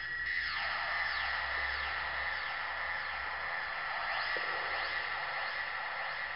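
Korg Monotron Delay analogue ribbon synthesizer sounding a high, steady tone with repeated falling pitch swoops that overlap one another, the delay echoing them. A low hum sits underneath.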